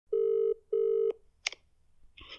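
Telephone ringback tone heard through a handset held to a microphone: one Australian-style double ring, two short steady buzzing tones in quick succession. About a second and a half in there is a sharp click as the line picks up.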